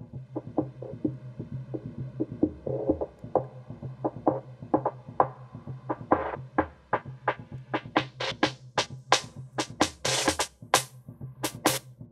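Electronic beat of drum-machine hits over a steady bass line, played through the high-cut filter of a FabFilter Pro-Q equalizer. It starts muffled with the treble cut away, and the filter sweeps open until the drums ring out fully bright in the last few seconds: a filter-sweep build into the chorus.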